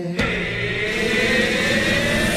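A loud rushing, engine-like noise that starts suddenly a moment in, its pitch slowly rising, like a jet or vehicle passing.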